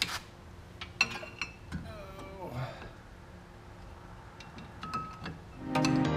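A few light metal clicks and clinks as a brake caliper is handled and fitted over a new front disc rotor. Louder music then comes in near the end.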